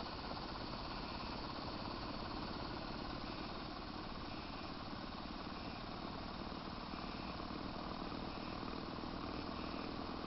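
Homemade corona electrostatic motor running unloaded, with a steady hissing whir from its high-voltage corona discharge and spinning rotor.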